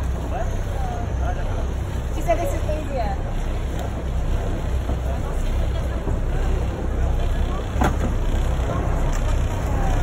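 Steady low rumble of the boat's inboard engine running slowly, under indistinct voices and chatter, with a single short click a little before eight seconds in.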